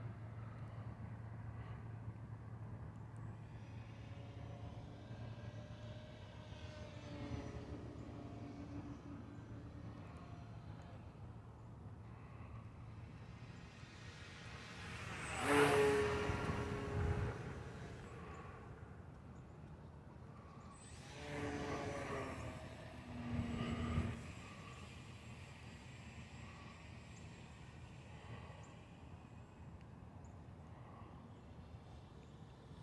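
Electric motor and propeller of a HobbyZone Carbon Cub S+ RC plane buzzing as it flies low overhead. The loudest burst comes about halfway through, with softer bursts a few seconds later.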